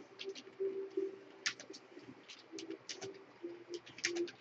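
Irregular light clicks, a few a second and loudest about one and a half seconds in, over a low, broken hum.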